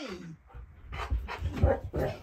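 A husky-malamute's drawn-out vocal call sliding down in pitch and ending in the first half second. It is followed by breathing and low thumps as the dog moves about.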